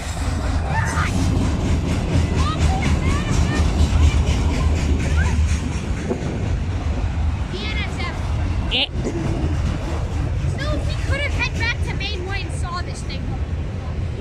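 Freight train of autorack cars rolling past at close range: a steady low rumble of steel wheels on the rails with running wheel clatter, and a brief high squeal about nine seconds in.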